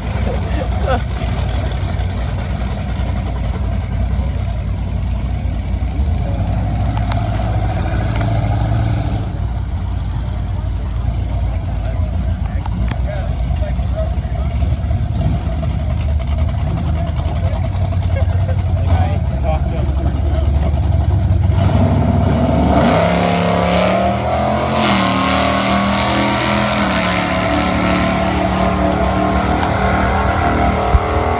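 Drag car engine idling with a heavy, steady low rumble after a burnout at the starting line. About two-thirds of the way through, a louder sound with steady, stepped pitches takes over.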